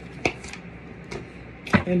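A few sharp taps of tarot cards being handled and set down on the table: one about a quarter second in and a louder one just before the end.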